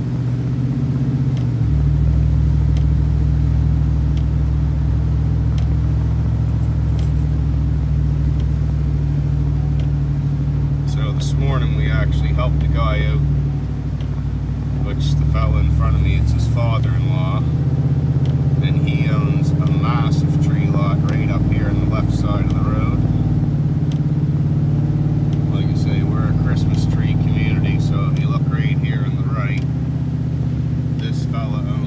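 Engine and road noise of a moving vehicle heard from inside its cab on a wet road: a steady low drone whose pitch steps up about two seconds in and drops and changes again around the middle, as the vehicle shifts or changes speed.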